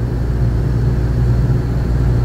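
Steady low rumble with a hum, unchanging throughout: constant background machine noise.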